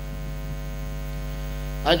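Steady electrical mains hum from the public-address sound system, heard in a pause of the chanted recitation; the man's voice comes back in just at the end.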